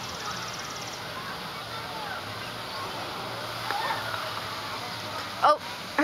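Steady outdoor background noise with faint distant voices. A high, fast-pulsing buzz fades out about a second in, and a nearby voice starts near the end.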